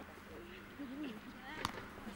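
Faint voices of players on a rugby training pitch, with one sharp click about one and a half seconds in.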